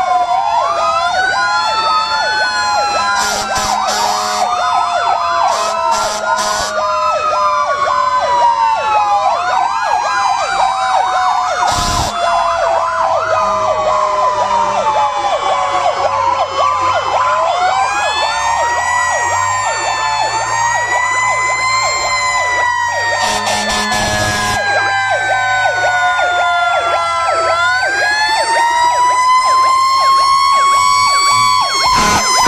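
Several fire truck sirens sounding at once as the trucks pass: slow wails that fall and rise, overlapping with stretches of fast yelping sweeps. A few short loud blasts cut across them, and a low engine rumble runs under the second half.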